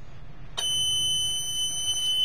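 Carbon-dioxide fire-extinguishing system alarm cutting in about half a second in: a steady, high-pitched electronic tone that holds on. It goes off as the panel's second fire-detection circuit trips during an inspection test.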